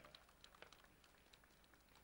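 Near silence: faint background with a few scattered faint ticks.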